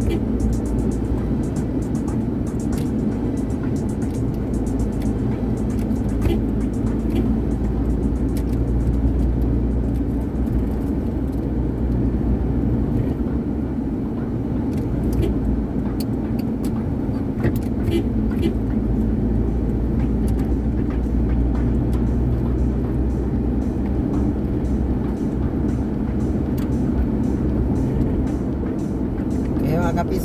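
Steady low rumble of a car's engine and tyres heard inside the cabin while driving at a constant speed, with scattered faint clicks.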